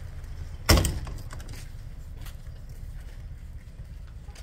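A portable toilet's plastic door banging shut once, a sharp loud bang about a second in, over a steady low rumble.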